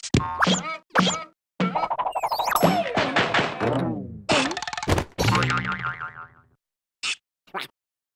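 Cartoon boing sound effects as characters bounce on a taut rope stretched over a pit, over music, with gliding springy tones and a sharp hit about five seconds in.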